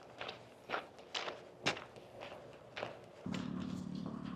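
Footsteps of a person walking at about two steps a second. About three seconds in, a steady low hum comes in.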